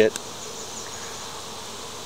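Honey bees from an open hive buzzing in a steady hum.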